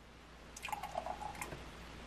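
Eggnog poured from a paper carton into a ceramic mug: a faint, uneven splashing pour that starts about half a second in and runs for about a second.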